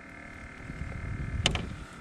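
Low rumbling handling noise while a caught largemouth bass is unhooked by hand, with one sharp click about one and a half seconds in.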